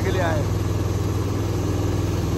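A small tourist motorboat's engine running at a steady, even hum while the boat moves along the river.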